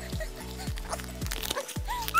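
Background music with a steady beat: a held low bass with a kick drum striking about twice a second.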